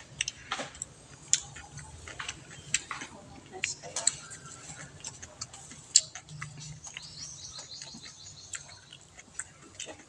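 Spatula tapping and scraping against a frying pan while pancakes cook, heard as irregular sharp clicks and ticks.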